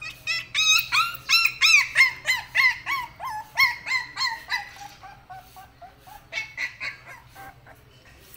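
A rapid series of short, high-pitched animal calls, about three or four a second, each rising and falling. The calls are loudest in the first few seconds, then grow lower and quieter after about four and a half seconds, with a few more near the end.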